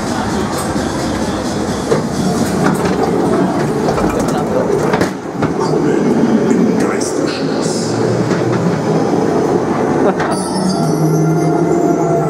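Ghost-train car rumbling and clattering along its track, with scattered sharp knocks. From about ten seconds in, a pitched, wavering effect sound from the ride plays over it.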